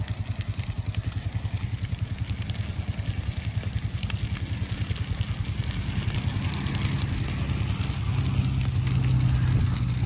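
An engine running at low speed with a rapid, even pulse, growing louder in the second half. Under it is the faint crackle of burning dry prairie grass.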